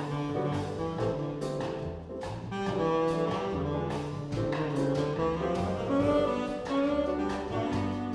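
Small jazz group playing: saxophone carrying the melody over piano, upright bass and a drum kit keeping time with light cymbal strokes.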